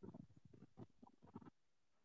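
A man's voice muttering faintly and indistinctly for about a second and a half.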